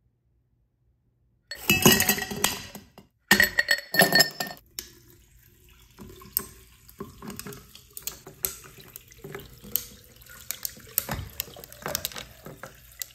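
Ice cubes dropped into a tall drinking glass in two loud clattering bursts, starting about a second and a half in. Then lemonade poured over the ice, with the cubes clinking and crackling in sparse sharp ticks as the cold liquid meets them.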